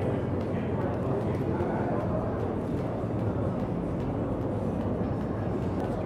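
A skipping rope ticking lightly on a rubber gym floor in a quick rhythm, over a steady din of indistinct voices and low room hum.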